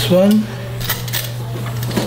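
A short voice sound right at the start, then a few light clicks and taps from a craft knife and the hard plastic megaphone body being handled while vinyl wrap is trimmed at its edge. A steady low hum runs underneath.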